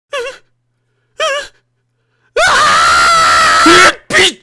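A man's voice: two short, trembling whimpers, then a long, loud scream of terror that begins a little past halfway.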